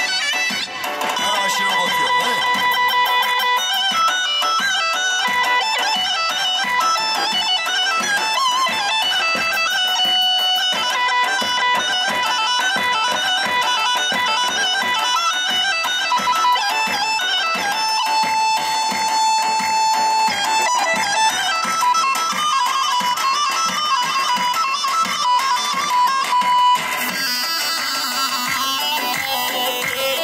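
Kurdish folk dance music: a loud wind-like melody of long held notes and runs over a steady, driving drum beat. The sound changes character about 27 seconds in.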